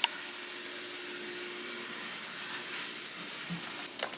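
Steady hiss of a kitchen in use while food cooks on the stove, with a faint hum that stops about halfway through and a few soft faint sounds near the end.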